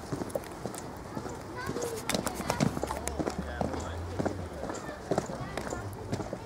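Footsteps on stone paving, a run of sharp irregular clicks, with indistinct voices of people in the background.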